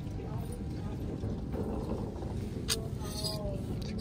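Shop ambience: a steady low rumble with indistinct voices in the background, and one sharp click a little under three seconds in.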